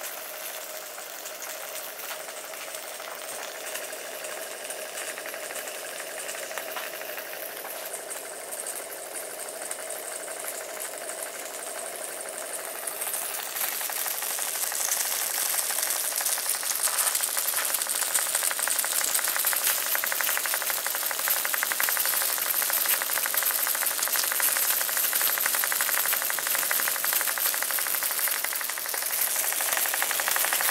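Clevedon Steam miniature steam engine running fast on steam: a rapid, even mechanical beat with hissing steam, which is leaking past the piston rod. It gets louder about halfway through.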